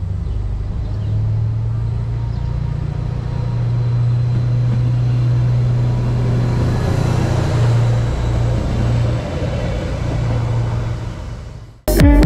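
Arriva Stadler GTW diesel multiple unit running past close by, with a steady low engine hum and rumble that swells as the train draws level. The sound cuts off suddenly near the end.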